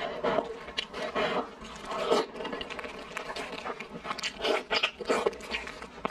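Close-miked eating sounds of cooked chicken: irregular wet chewing and biting of the meat, mixed with the soft tearing of meat and skin pulled apart by gloved hands.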